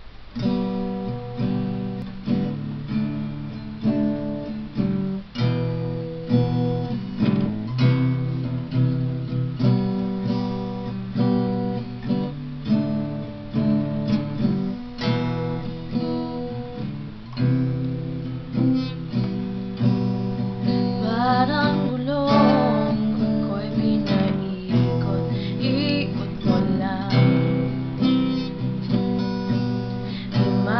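Acoustic guitar strummed in a steady rhythm, playing the chord intro to a song before the vocals come in.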